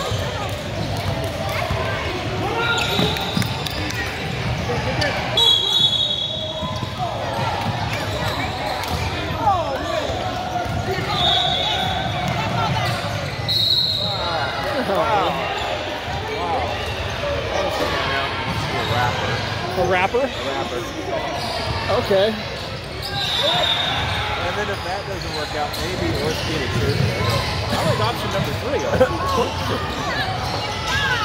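Basketball bouncing on a gym court amid a continuous echoing din of players' and spectators' voices, with several short high-pitched tones.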